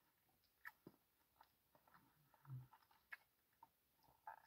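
Near silence with faint mouth sounds of a person chewing a caramel-and-nut chocolate bar: a few soft clicks and a brief low hum about two and a half seconds in.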